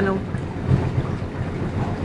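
Low, steady rumble of a small boat's engine as it motors along the canal.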